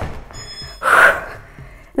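A woman's heavy breath during a Pilates teaser sit-up: one short, loud rush of air about a second in, from the effort of lifting into the exercise.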